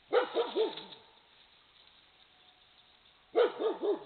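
Red fox barking: a quick run of three hoarse barks right at the start, then another run of about four near the end, each bark rising and then falling in pitch.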